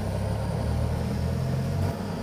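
A low, steady rumble, a little louder in the second half and cutting off just before the end.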